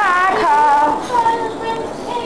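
A child singing in a high voice, holding drawn-out notes that bend and step in pitch, softer after about a second.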